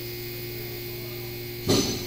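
Steady electric hum of the machine pumping pressure into a car's A/C system for a leak test, the gauge needle climbing. About 1.7 s in, a short sharp noise cuts in and fades quickly.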